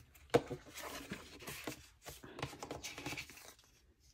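Handling of thin planner paper and a sticker sheet: faint rustling as the pages are smoothed flat and a tab is peeled off, in two stretches, with one sharp tap just after the start.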